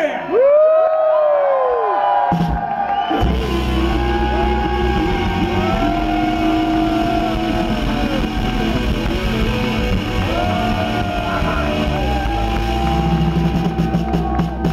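Live rock and soul band: sliding, bending notes over a thin low end, then bass and drums come in about three seconds in and the full band plays on loudly.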